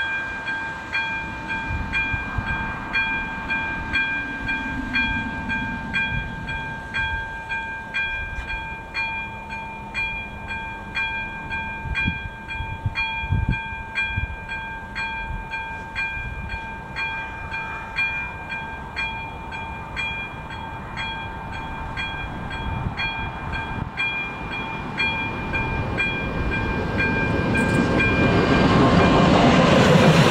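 Electronic warning bell (AŽD ZV-02) of a Czech level crossing ringing steadily, pulsing about twice a second, signalling an approaching train. Over the last few seconds the rumble of the oncoming locomotive-hauled passenger train grows louder and drowns the bell.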